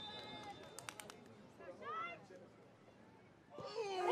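Hushed outdoor soccer stadium during a penalty kick, quiet except for a faint distant shout about two seconds in and a few faint clicks about a second in.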